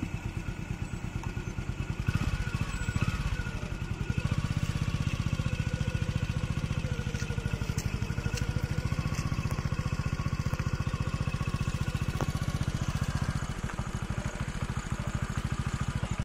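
A vehicle engine running steadily with a fast, even beat, a little louder from about four seconds in.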